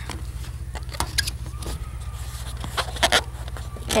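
Tape and a rubber balloon being handled as the balloon is taped to a drinking straw: scattered short clicks and rubs, over a steady low hum.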